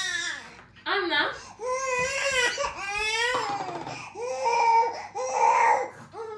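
A four-month-old baby crying: a string of wavering wails broken by short pauses for breath.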